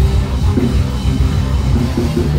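A live ska band playing loudly, with drum kit and bass driving a steady beat.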